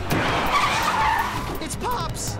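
Cartoon tyre screech of a vehicle skidding: a sudden noisy burst with a wavering squeal that fades after about a second and a half.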